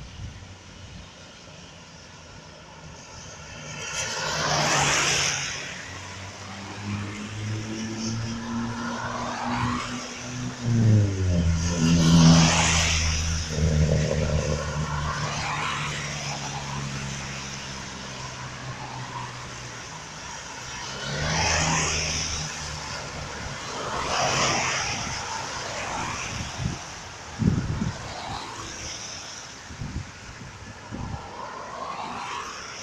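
Cars passing one after another on a rain-wet road, each pass a swell and fade of tyre hiss, about five in all. A low engine hum runs through the middle stretch and drops in pitch around eleven seconds in.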